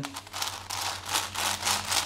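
V-Cube 7 (7x7 twisty puzzle) being turned quickly in the hands: a rapid flurry of light plastic clicks and rustling as its layers turn.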